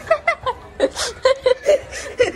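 A person chuckling and laughing in a string of short, choppy bursts.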